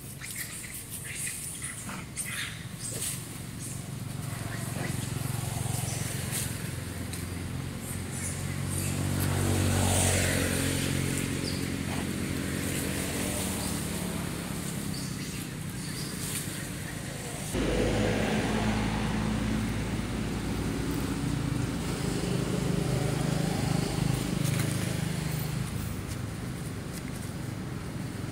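A motor vehicle's engine passing, growing louder to a peak about ten seconds in and then fading. It is followed, after a sudden change, by another engine running steadily.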